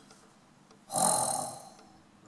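A woman's breathy, drawn-out "oh" of admiration, starting about a second in and fading away, after a nearly silent start.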